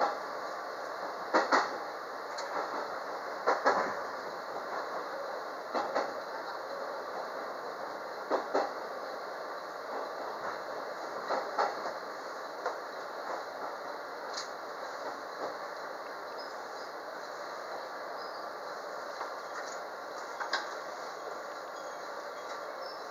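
213 series electric train heard from inside the front car: wheels clicking over rail joints in pairs under a steady running rumble. The pairs come further apart and grow softer as the train slows into the station.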